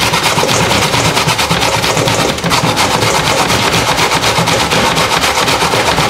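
Raw cauliflower scraped up and down the perforated metal plate of a hand grater standing in a steel bowl: a fast, steady run of rasping strokes.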